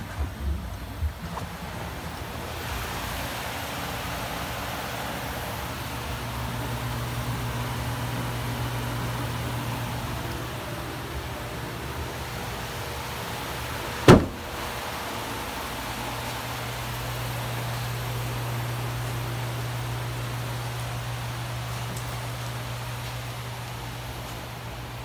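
A wrecked GMC's engine idling steadily with a low, even hum. About 14 seconds in there is a single sharp knock.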